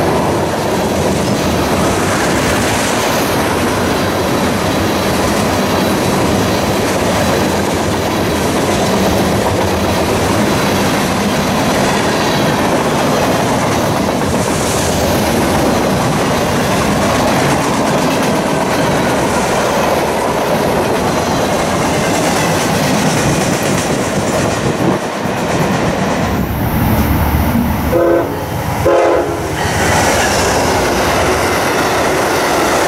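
A long freight train of tank cars and boxcars rolls past at speed, its wheels making a steady rushing rumble on the rails. Near the end, a locomotive horn sounds briefly in short broken blasts.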